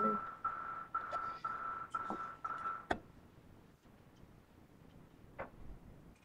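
Electronic alarm beeping, a single high tone in a steady run of about two beeps a second, cut off with a click about three seconds in.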